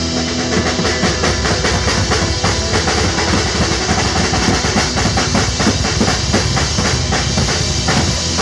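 Live band music driven by a marching snare drum and a large marching bass drum beating a fast, dense rhythm without pause, with electric guitar underneath.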